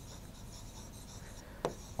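Marker pen writing on a board in short, faint scratchy strokes, with one brief click near the end.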